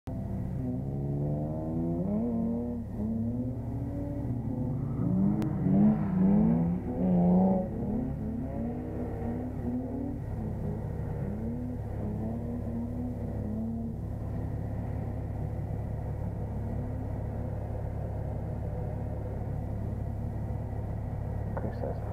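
BMW 330's straight-six engine heard from inside the cabin, revving up and down repeatedly through the first half, loudest around six to eight seconds in, then holding a steady note for the last several seconds.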